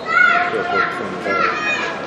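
Several high-pitched voices shouting and calling out over one another, over a steady background of crowd noise.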